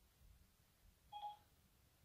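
Near silence, then about a second in a brief, faint electronic chime from an iPhone: Siri's tone signalling that it has finished listening to a spoken question.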